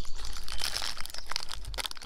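Plastic packaging of Peeps marshmallow candies crinkling and tearing as it is opened by hand: a dense, rapid crackle that stops just before speech resumes.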